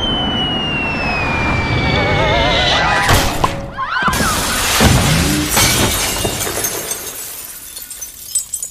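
A cartoon whistle slides steadily down in pitch for about three seconds. After a brief hush, a loud crash of a tempered-glass basketball backboard shattering comes in about four seconds in, and the glass tinkles away, fading toward the end.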